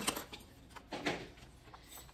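Soft handling noises of paper and planner supplies on a desk: a click right at the start, then a few brief rustles about a second in.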